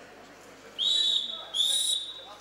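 Wrestling referee's whistle blown twice in quick succession, each blast about half a second long, stopping the action on the mat.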